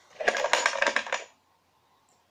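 Plastic numbered draw tokens rattling and clicking against each other in a plastic box as a hand draws one out: a rapid clatter lasting about a second that stops just past the middle.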